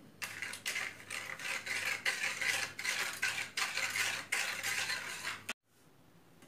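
A wire whisk beating a milk mixture in an aluminium bowl, its metal wires rattling and scraping against the bowl in rapid, uneven strokes. The whisking cuts off suddenly near the end.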